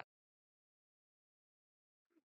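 Silence: the broadcast audio drops out completely between the commentator's phrases, with no crowd or field sound.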